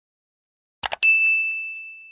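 End-screen subscribe-button sound effects: a quick double click, then a single bright bell ding about a second in that rings and slowly fades.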